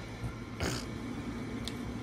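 Bedding rustling briefly, a little over half a second in, as a person gets up out of bed, with a faint click near the end. Under it runs a steady low electrical hum.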